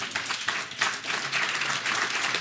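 An audience applauding, many people clapping together.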